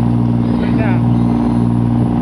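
Boat engine running with a steady drone while the boat is under way. A brief voice comes in about halfway through.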